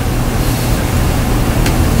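Steady hiss with a low hum from an open microphone channel, with no other sound in it.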